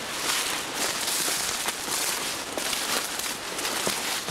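Rustling and crackling of shrubs and tall grass brushing against someone pushing through on foot.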